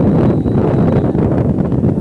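Wind buffeting the microphone while riding on a motorbike: a loud, steady low rumble.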